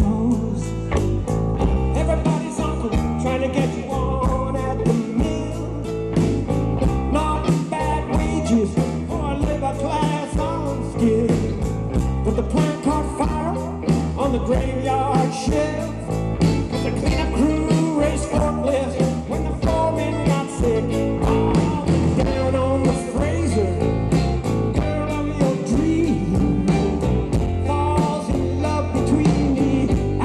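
Live roots-rock band playing an instrumental passage between verses: strummed archtop guitar, mandolin, electric bass and drums keeping a steady beat.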